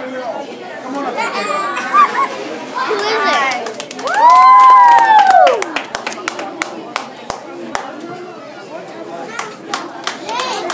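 Room full of children and adults chattering, with a loud, drawn-out high-voiced cheer of about a second and a half in the middle, followed by a run of sharp claps.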